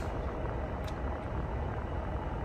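Steady low hum inside a vehicle cab, with one faint click a little under a second in.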